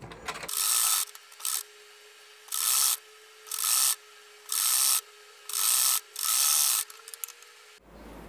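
Usha sewing machine stitching in about six short runs of roughly half a second each, with pauses between them. It is sewing a binding strip around the curved edge of a terry-cloth hanky piece.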